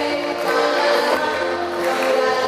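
A church congregation singing a hymn together, with held notes changing about every half second.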